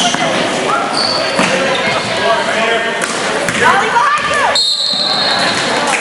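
Basketball game sounds in a large, echoing gym: a basketball bouncing on the court and sneakers squeaking, with players and spectators shouting.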